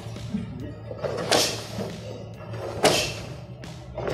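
Two thuds about a second and a half apart, from kicks landing on a target in a martial arts drill.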